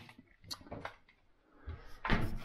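Faint handling noises in an open refrigerator: a few light clicks and knocks about half a second in, then soft rustling near the end.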